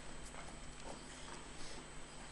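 Faint, scattered footsteps and light clicks of graduates crossing a stage, over a thin, steady high-pitched whine.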